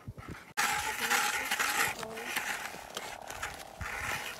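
Hand ice auger being turned through thick lake ice, its blades scraping steadily, starting suddenly about half a second in. The cutting is slow and hard going because the ice is thicker here.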